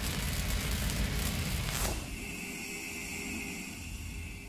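Logo-sting sound effect: a noisy rumbling tail after a boom, with a falling whoosh about two seconds in, followed by a quieter steady ringing hum that fades toward the end.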